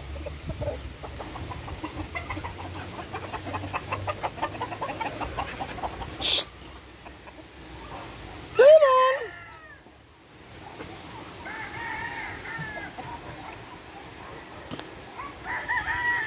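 Roosters on a gamefowl farm: a fast, even run of clucks for the first few seconds, a sharp brief noise about six seconds in, a loud short call about nine seconds in, and fainter crowing from farther birds around twelve seconds.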